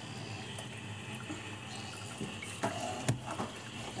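Water from a sink faucet running steadily into a sink, with a couple of sharp knocks about three seconds in.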